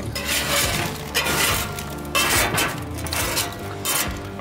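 Repeated rasping scrapes on a grease-crusted metal smoker tray, about one stroke a second, as caked-on grease and dirt are scraped off.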